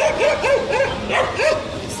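A dog barking repeatedly in short, quick yaps, about three a second.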